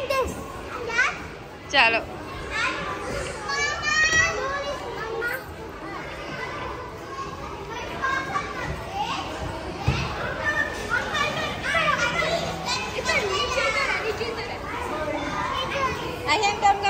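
Children playing: several high children's voices talking and calling out over one another, with a few shrill squeals.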